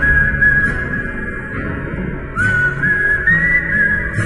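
A lone whistled tune in two phrases, with a short pause between them and the second phrase climbing higher, over a low sustained music bed.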